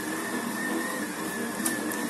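An 1800 W stand mixer running steadily on low speed with a high-pitched whine, its dough hook kneading whole-wheat semolina bread dough.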